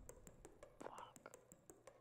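Near silence: a run of faint clicks, with a brief faint voice about a second in.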